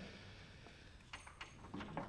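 Faint background hum of an indoor squash arena, with a few soft clicks a little past the middle.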